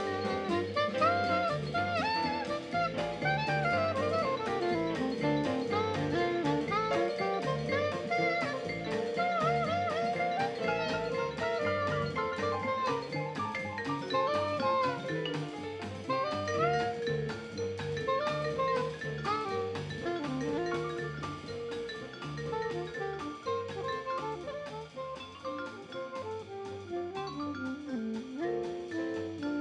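Live jazz quintet playing: vibraphone and soprano saxophone over piano, upright bass and drums.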